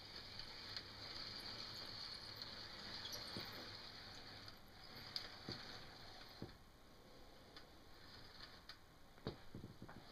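Lionel tinplate O-gauge passenger cars rolling slowly along three-rail track: a faint steady rolling sound with a few scattered light clicks from the wheels on the rails.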